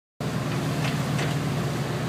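Steady low motor hum with a constant pitch, under a hiss of wind and water.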